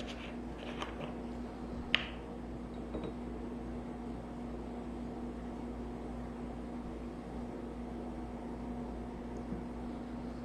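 Plastic screw cap twisted off a cooking-oil bottle with small clicks, then set down on the table with a sharp tap about two seconds in. After that, cooking oil is poured slowly into a glass of water, a faint steady pour over a low steady hum.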